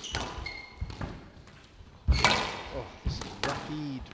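Squash ball being struck by rackets and hitting the court walls in a rally: a string of sharp thuds, the loudest about two seconds in, with short high squeaks from court shoes on the floor.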